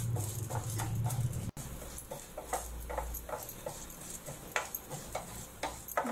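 Wooden spatula stirring split chana dal and urad dal as they roast in a nonstick frying pan: light, irregular clicks and scrapes as the grains rattle across the pan.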